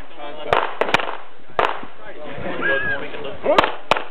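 Gunshots fired on a practical shooting course: two cracks about half a second apart, a third about a second in, then after a two-second gap two more in quick succession near the end, with outdoor echo after each.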